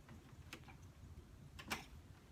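Faint handling sounds: a couple of light clicks, one about half a second in and a louder one near the end, over a low background.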